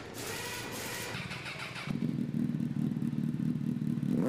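Motorcycle engine sound effect: about two seconds in, the engine catches and runs with a louder, steady, pulsing beat.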